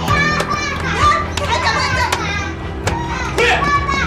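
A young girl crying and shouting in a high, shrill voice over background drama music.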